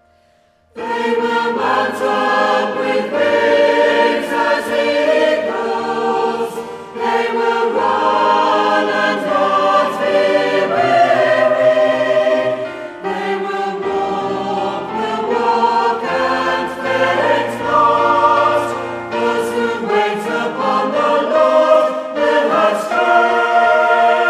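A choir singing a worship song over instrumental accompaniment, coming in suddenly about a second in after near silence.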